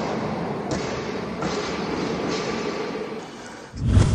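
Intro logo sound effect: a steady, noisy rush that ends in a loud, deep thud near the end.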